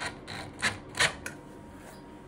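A handful of sharp, irregular clicks and taps of hard plastic and metal as the new toilet seat's hinge fastener and its screw are handled, the loudest about a second in. No drill motor is heard.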